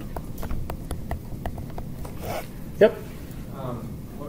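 Light, irregular clicks and taps of a stylus on a tablet screen while words are written by hand, with a short vocal sound from the lecturer a little under three seconds in.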